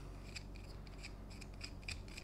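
Faint, irregular metallic scraping and ticking as a #8-32 threaded rod is worked through the drilled holes of an aluminum tube.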